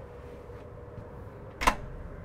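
A single short click from the wardrobe's cabinet door or its hinge, about three-quarters of the way through, over a faint steady hum with a thin steady tone.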